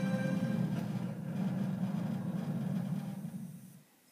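Low, rumbling musical drone with faint tones above it, from a TV logo ident played on a television's speakers; it fades and cuts out just before the end.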